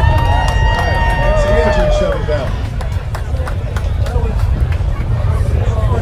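A crowd of spectators cheering, with long, held whoops in the first two seconds, then chattering. A steady low rumble runs underneath.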